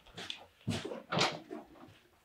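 Australian Shepherd puppy eating dry kibble from a plastic maze slow-feeder bowl. There are about five or six separate crunches and clicks, roughly one every half second, as he picks pieces out from between the ridges.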